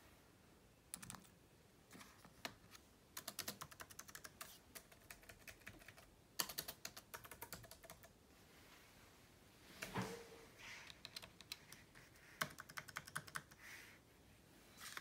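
Keys of a computer keyboard being tapped in several quick runs of clicks with short pauses between them, plus a duller knock about ten seconds in.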